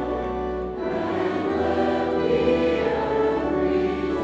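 A choir singing a hymn in held, sustained chords.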